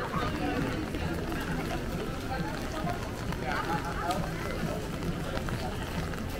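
Indistinct voices of people talking in the background, over a steady low rumble of outdoor ambience.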